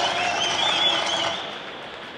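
A group of young voices calling out together over the stadium public-address system, echoing around the ballpark and dying away about a second and a half in, leaving faint crowd noise.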